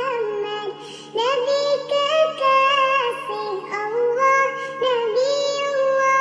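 A high, childlike singing voice sings a sholawat, an Islamic devotional song praising the Prophet Muhammad, in a flowing melody with a short break about a second in.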